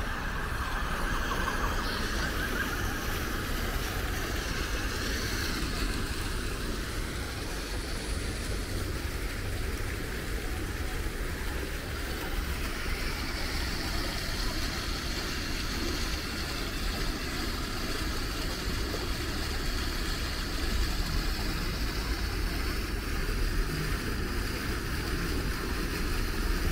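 Steady splashing of a fountain's water jets into a pool, over a constant low rumble.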